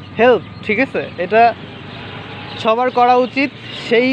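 Mostly speech: a man talking in two short bursts, with a steady low rumble of road noise behind.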